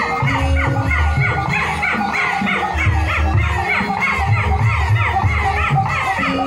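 Javanese gamelan ensemble playing, with low drum strokes and high, wavering singing voices over the ensemble.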